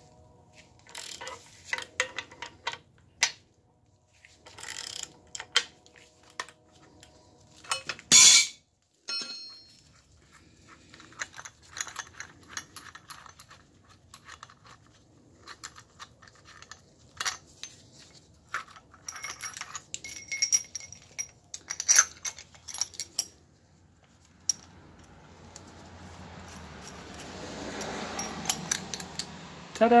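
Scattered metal clicks and clinks from a steel screw-type bushing press and a ratchet being worked on a suspension knuckle, with one loud sharp clank about eight seconds in. A rush of noise swells near the end.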